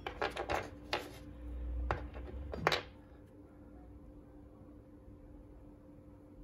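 Small glass cartridge fuse picked up and handled on a plywood workbench: a quick run of light clicks and taps in the first three seconds, then only a faint steady hum.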